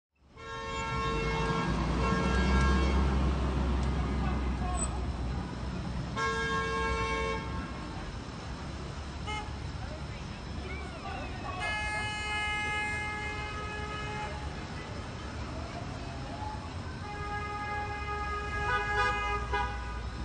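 Car horns honking in long, held blasts over steady street traffic noise, at least two horns of different pitch: drivers held up behind a stopped car in the lane. The longest blast comes about twelve seconds in, another near the end.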